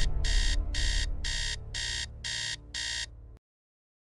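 Digital alarm clock beeping, about two short high beeps a second, seven in all, over a low music bed that fades away. All sound stops suddenly a little after three seconds in.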